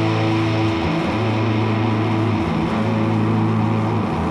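A rock band playing live with heavily distorted electric guitar and bass. They hold long, loud, low droning notes that change about every second and a half, with no singing.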